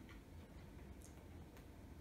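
Near silence: room tone, with a faint tick about a second in.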